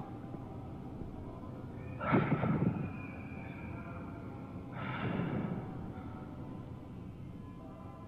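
Quiet, eerie ambient music drone, with two breathy swells about two and five seconds in.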